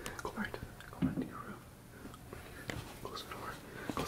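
Hushed whispering, broken up and scattered, with a soft thump about a second in.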